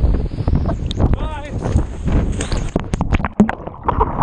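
Wind buffeting an action-camera microphone as a steady low rumble, with one short wordless vocal sound about a second in. Several sharp knocks from handling the camera come in the last second or so.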